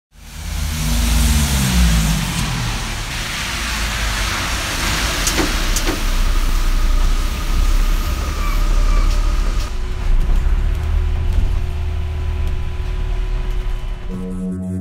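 Street traffic noise with a heavy vehicle's engine rumbling, its pitch falling in the first two seconds as it passes. Two sharp clicks come about five and a half and six seconds in.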